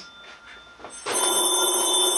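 A telephone bell ringing, starting about a second in as one continuous steady ring.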